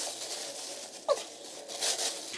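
Crepe paper packing rustling and crinkling as it is pulled by hand out of a cardboard box, with a short falling tone about a second in.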